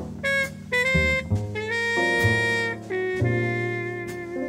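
Slow small-group jazz ballad: a horn plays long held melody notes over low bass notes and accompaniment.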